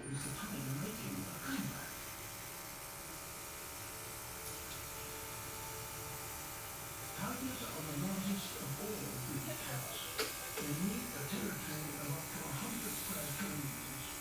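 Small motor of a cordless airbrush compressor buzzing steadily while the airbrush sprays dye, with a voice, likely a song, over it in the first second and again in the second half.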